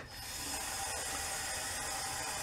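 Tap running steadily into a sink, filling it with water.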